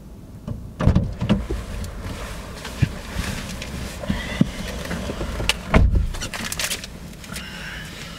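A car door opening and a man getting into the driver's seat, with clicks and the rustle of a roll of paper being handled. The door shuts with a heavy thump about six seconds in.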